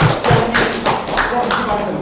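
A few people clapping by hand, a brief small round of applause made of distinct, irregular claps that stops near the end.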